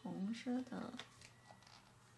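A voice speaks briefly in the first second. After that come a few faint clicks and rustles of rhinestone stickers being peeled from their plastic sheet and pressed onto the picture.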